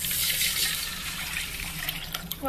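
Water poured in a steady stream from a steel vessel into a stainless steel pot, splashing onto the pot's bottom and over the whole spices lying in it.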